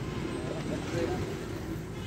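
Faint voices in the background over a low, steady outdoor rumble.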